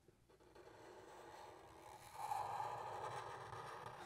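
Faint scratchy hiss of a Sharpie marker's felt tip drawing a curved line across marker paper, a little louder from about two seconds in.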